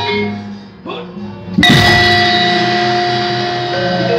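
Javanese gamelan in slendro, led by a saron, a metallophone whose metal keys are struck with a wooden mallet in quick elaborating patterns (cacahan). The playing thins and drops away in the first second and a half, then comes back with a sudden loud stroke whose keys ring on steadily.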